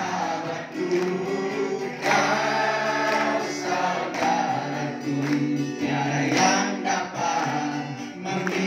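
A congregation sings a Malay-language Christian worship song together, with hands clapping along.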